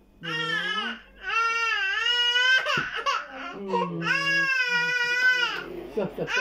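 A baby crying in three long, high-pitched wails, each rising and falling in pitch.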